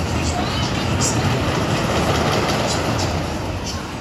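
Steady mechanical rumble of a pendulum thrill ride's machinery while its gondola turns slowly near the bottom of its swing, with people talking over it.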